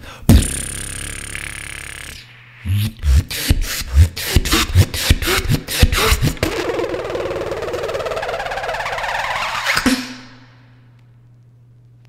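Solo beatboxing played back from a battle routine. A held hissing note gives way to a fast run of kick and snare hits, then a long, building noise that cuts off suddenly about ten seconds in, leaving quiet.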